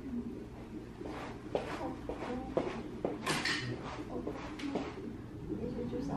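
Light clicks and clatters of small objects being handled, about eight of them spread over a few seconds, over a faint low steady hum.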